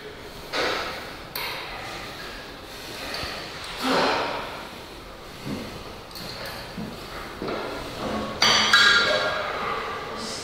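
Scattered metallic pings and knocks from steel gym equipment, loudest near the end, where a ring holds for about a second.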